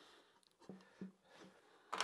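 Near silence with a few faint, light knocks as the small wooden parts-holding jig is handled on the workbench, and a sharper click near the end.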